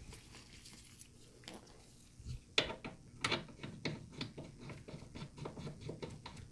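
Faint, irregular metal clicks and ticks of a valve core removal tool and hose fittings being handled and fitted onto a mini-split's brass service port, starting a couple of seconds in.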